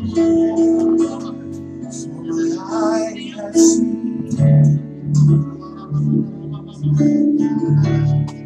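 Live worship music: guitar with held notes and voices singing. A steady low beat comes in about halfway.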